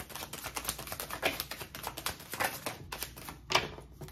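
A tarot deck being shuffled by hand: a rapid, uneven run of card clicks and flicks, with one louder snap near the end.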